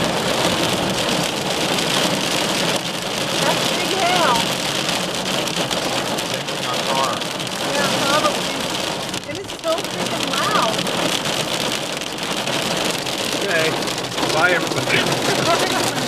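Heavy rain mixed with hail pelting the roof and windshield of a car in a cloudburst, a loud, steady, dense patter heard from inside the cabin.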